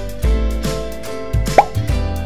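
Background music with a steady beat, and one short, loud plop with a quick rising pitch about one and a half seconds in, as the top of a plastic surprise egg comes off.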